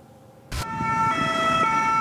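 French SAMU ambulance two-tone siren, switching between a higher and a lower note about every half second, over the low rumble of street traffic. It cuts in suddenly about half a second in.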